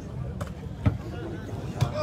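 Murmur of a seated spectator crowd with scattered voices, broken by two short sharp knocks, one about a second in and one near the end.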